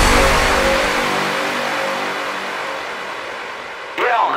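An electronic dance track's beat drops out, leaving a noisy sustained wash with a few held tones that fades away steadily over about four seconds.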